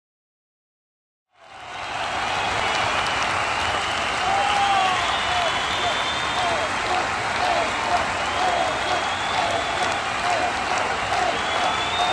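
Silence for about a second and a half, then an audience applauding steadily, with voices calling out in the crowd.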